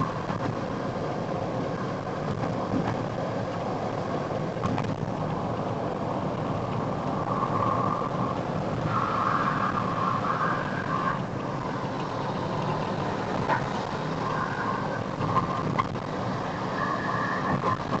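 Car cabin noise while driving at speed: steady engine and tyre-on-road noise heard from inside the car, with an intermittent high steady tone in the second half.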